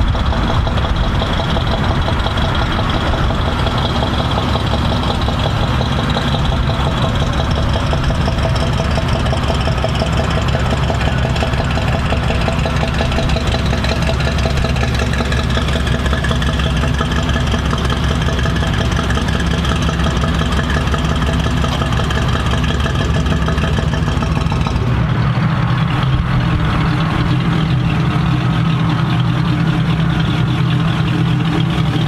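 Classic pickup truck's engine running at low speed as the truck rolls slowly by, steady throughout. About 25 seconds in, the engine sound changes abruptly to a different, lower-pitched one.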